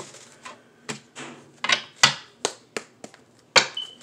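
A deck of fortune-telling cards being shuffled by hand: a string of sharp, irregular card slaps and clicks, loudest about two seconds in and again near the end.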